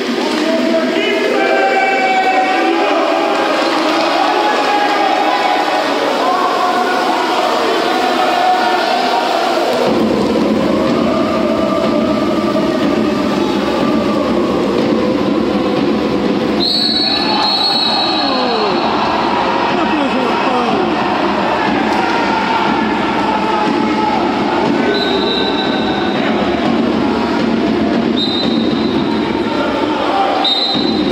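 Water polo match sound in an indoor pool: players' shouts over splashing water, with a steady low rumble coming in about ten seconds in. A referee's whistle gives one long blast partway through and two shorter blasts near the end.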